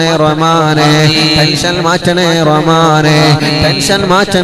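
A man chanting a melodic, drawn-out Islamic supplication in long gliding phrases over a steady low drone.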